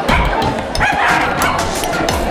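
A small dog gives a short, high yip about a second in, over background music.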